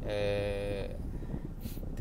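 A man's voice holding one long, steady note for under a second near the start, dipping in pitch as it ends: a drawn-out, sung syllable of preaching. A low, steady car-cabin rumble runs underneath.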